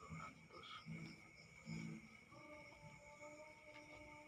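Faint, steady chirring of crickets, with a few soft low sounds in the first two seconds.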